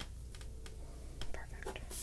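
A few faint, scattered soft clicks and taps, with a breath near the end.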